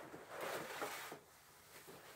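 Soft scraping for about a second: a metal retaining ring being slid down over a tightly rolled titanium stove pipe sheet.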